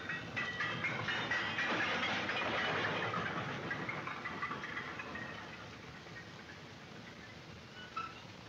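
Train passing through the station: a rushing noise that swells over the first three seconds and dies away by about six seconds.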